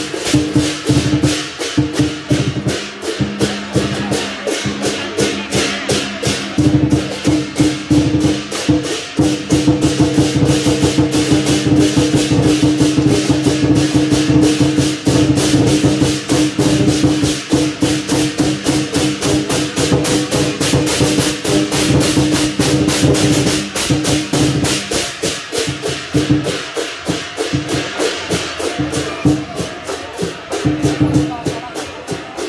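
Lion dance percussion of drum, cymbals and gong playing a fast, steady, unbroken beat, with a ringing tone held underneath.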